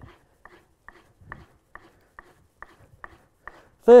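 Plane cutting iron's bevel being stroked back and forth on a board charged with buffing compound, giving a faint, even tick a little over twice a second as each stroke turns.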